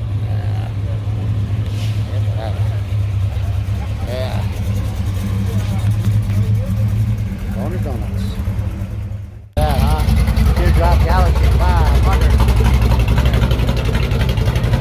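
Classic car engines idling with a steady low rumble, with people's voices around them. An abrupt break about nine and a half seconds in is followed by a closer, louder engine rumble.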